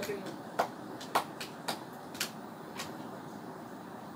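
A spoon clicking against a plate about five times, roughly half a second apart, while eating.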